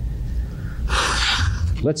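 A man draws a quick, audible breath through the podium microphone, about a second in, as he pauses between sentences of a talk. A low steady hum sits underneath, and his speech starts again near the end.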